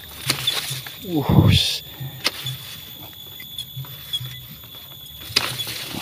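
Bamboo leaves and thin stems rustling and crackling, with scattered sharp snaps and clicks, as someone pushes through a bamboo clump. A man's brief falling "oh" comes about a second in.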